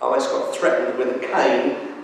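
A man speaking: a sermon delivered into a microphone in a reverberant church.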